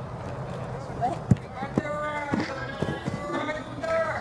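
Untranscribed shouts and calls from the soccer field. About a second in comes one sharp thud of a soccer ball being kicked, the loudest sound, followed by a smaller knock shortly after.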